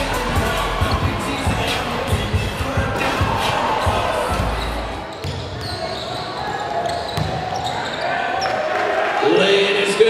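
A basketball dribbling on a hardwood court, with thuds mostly in the first half, under a mix of players' and spectators' voices echoing in a large gym.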